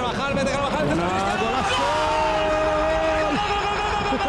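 A football commentator's excited voice over steady stadium crowd noise after a goal, with one drawn-out call held for about two seconds near the middle.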